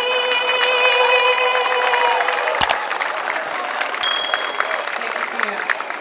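A woman's amplified singing voice holds a long final note that ends about two seconds in. A brief thump follows, then the crowd applauds and cheers.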